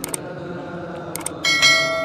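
Sound effect of a subscribe-button animation: short clicks, then a bright bell chime about a second and a half in that keeps ringing.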